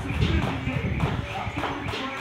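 Jump rope slapping the floor and feet landing in a quick, even rhythm during double-unders, over music with vocals.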